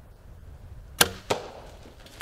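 A bow shot at a blacktail deer: a sharp, loud crack of the bowstring release about halfway in, then the smack of the arrow hitting a third of a second later.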